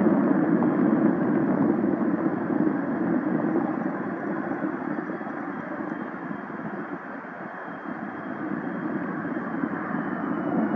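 Two McDonnell Douglas CF-18 Hornets' General Electric F404 turbofans running at taxi power: a steady jet rumble with a faint high whine that slides a little lower near the end. The sound eases off through the middle and grows again toward the end.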